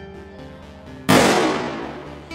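Acoustic guitar background music, then about a second in a sudden loud crash of noise that fades away over about a second: a video-transition sound effect.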